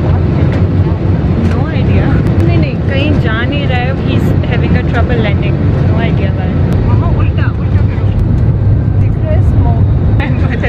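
Steady low rumble inside an airliner cabin, from the engines and air system, with other passengers talking over it in the background.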